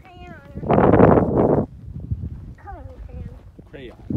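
High-pitched child's voice calling out in short, wavering, falling cries, with a loud rush of noise lasting under a second about a second in.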